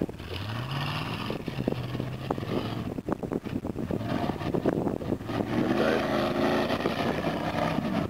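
Rock-crawling buggy's engine revving under load as it climbs a loose dirt slope. The revs climb about half a second in and again near the end.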